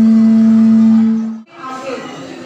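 A loud, steady low tone held on one pitch, cut off abruptly about one and a half seconds in. Voices and music in a large hall follow.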